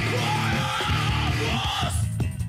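Heavy metal band playing, with yelled vocals over a steady low bass line and drums.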